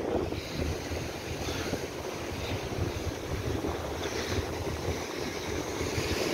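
Wind buffeting the microphone over the steady wash of surf breaking on rocks.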